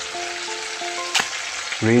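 Chicken pieces deep-frying in a wok of hot oil: a steady sizzle, with one sharp click a little past the middle.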